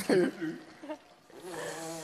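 A woman laughing: a short laugh at the start, then a low, steady held voiced sound through the closing half-second.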